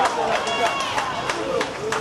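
Several voices shouting over one another on an outdoor football pitch, celebrating a goal, with scattered sharp claps.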